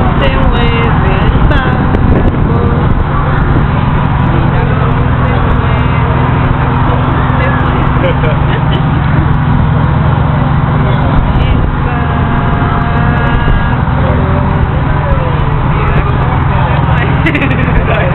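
A boat's engine running with a steady low drone, with people's voices talking over it.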